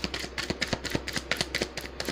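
Rapid, irregular tapping clicks, several a second, over a steady low hum.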